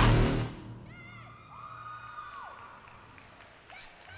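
Hip-hop dance music cuts off suddenly about half a second in, followed by scattered whoops and cheers from the audience, including one long high whoop that rises, holds and falls.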